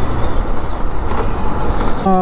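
Wind and road noise rushing over a helmet-mounted action camera's microphone while a motorcycle rides through city traffic. It is a dense, steady rush with no distinct engine note.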